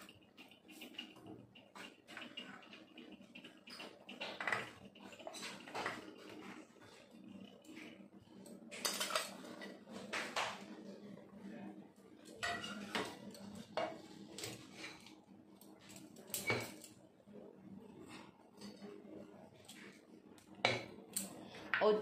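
Chopped vegetables being tipped from a steel plate into a stainless-steel mixer-grinder jar: scattered light clinks and scrapes of steel on steel.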